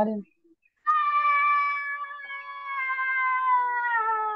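A single drawn-out, high-pitched vocal call, starting about a second in and held for roughly three and a half seconds, its pitch sinking slowly.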